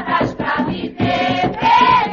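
A group of voices singing an Umbanda ponto (a sacred chant) over a steady percussion beat.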